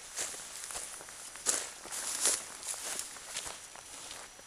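Footsteps pushing through tall dry grass clumps, the stalks swishing against legs and packs in uneven strokes, two louder swishes about one and a half and two and a quarter seconds in.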